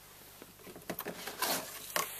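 Rustling and light clicks of a power cord and its plug being handled and lifted out of a cardboard box with foam packing, starting about halfway through after a near-quiet moment.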